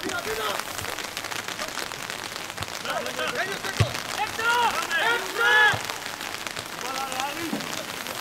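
Steady hiss of rain falling, with voices calling out across a football pitch between about three and six seconds in.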